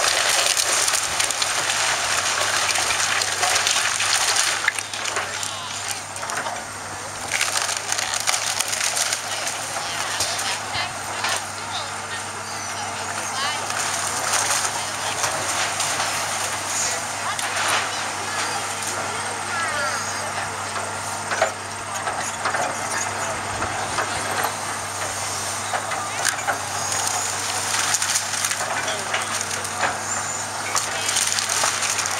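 Excavator demolishing a wooden house: timber cracking, splintering and crashing down in many sharp breaks, over the steady running of the machine's diesel engine.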